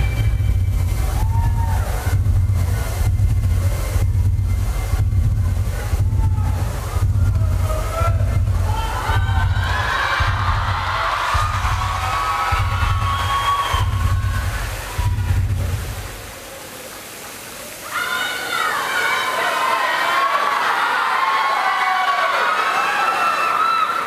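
Tense stage music with a heavy pulsing beat, with audience shouting rising over it; the music cuts off about 16 seconds in, and after a brief lull the audience breaks into loud cheering and screaming.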